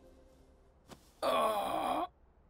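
A person moaning: one drawn-out vocal sound, wavering in pitch, starting just over a second in after a faint click.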